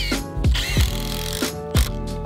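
Cordless impact driver hammering as it drives a batten screw into a timber retaining-wall board, in a burst of about a second, over background music with a steady beat.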